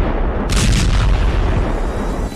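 Battlefield artillery and gunfire: a continuous heavy low rumble with a sharp blast about half a second in.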